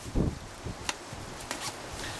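Rustling of a padded nylon jacket's shell as fingers open its inside pocket, with a sharp click about a second in and a few faint ticks after.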